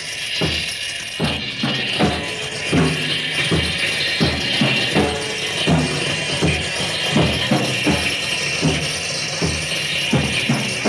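Live no wave band recording: a steady, even beat falling about every three-quarters of a second, with pitched low notes on each beat, under a continuous high jangling hiss.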